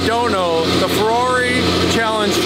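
A man talking, over a steady low hum.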